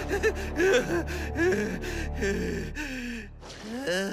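An animated character's dubbed voice gasping and panting, a run of short breathy gasps followed near the end by a longer, wavering breath out.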